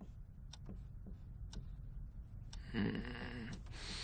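Classroom wall clock ticking faintly, about once a second. About three seconds in, a sleeping student gives a short snore.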